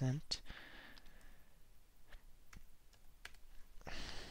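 Computer mouse clicks and keyboard key presses: a handful of sharp, separate clicks spaced roughly half a second to a second apart. A short hiss of noise comes just after the start and a louder one at the very end.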